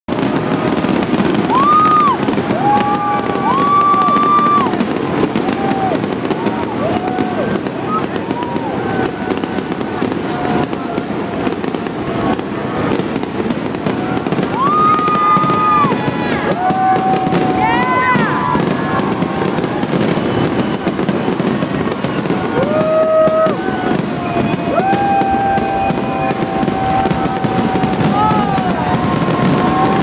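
Grand finale fireworks barrage: a dense, continuous run of bangs and crackling from many shells bursting at once. Crowd voices call out and cheer over it throughout.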